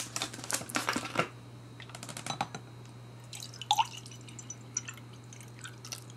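A plastic water bottle crackles and clicks as its cap is unscrewed in the first second. Softer scattered clicks follow, then water trickles from the bottle into a glass measuring jug near the end.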